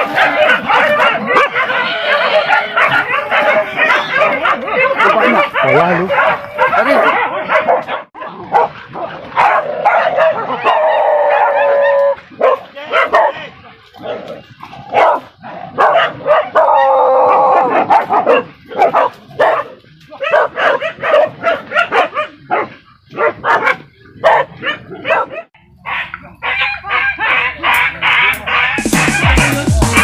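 A pack of boar-hunting dogs barking and yelping together in a dense, continuous chorus, with a few long, drawn-out yelps and some breaks in the middle.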